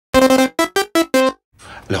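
Short synthesizer intro jingle: five bright electronic notes, the first held a little longer and the next four short, climbing in pitch and then dropping back. It stops about a second and a half in, and a man's voice begins just at the end.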